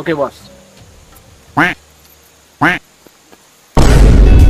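Two short duck quacks about a second apart, then music cuts in loudly near the end.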